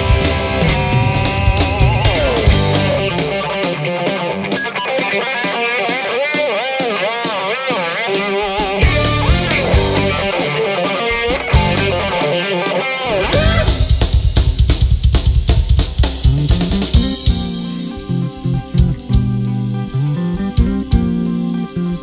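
Instrumental rock played on electric guitar and drum kit: a lead guitar line with wavering bends and vibrato over steady drums. In the last few seconds the lead drops away, leaving a low repeated guitar riff with the drums.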